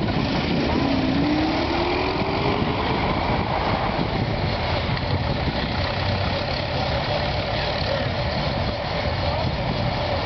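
Early brass-era automobile engines running steadily, with a brief rising engine note about a second in as a car pulls away.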